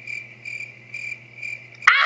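Cricket chirping sound effect: a steady high chirp pulsing about five times at an even pace, starting suddenly and cutting off near the end. It is the stock 'awkward silence' gag, answering a question that gets no reply.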